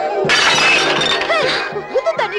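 A sudden shattering crash, like breaking glass, about a quarter second in, lasting over a second above steady film background music. A woman's voice comes in near the end.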